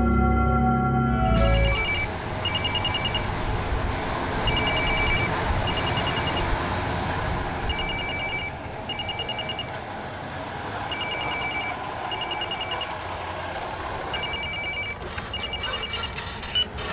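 Mobile phone ringing with an electronic ringtone: short double rings about every three seconds, over a steady background hiss. A music sting fades out about a second and a half in.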